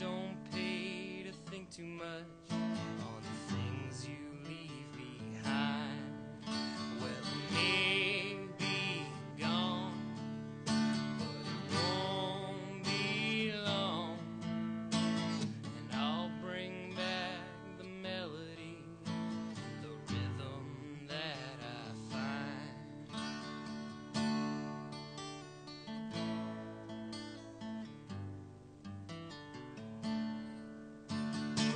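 Acoustic guitar played solo in a continuous instrumental passage, a steady stream of plucked and strummed notes.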